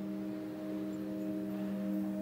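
Background score: a soft chord of several steady, held tones, swelling slightly toward the end.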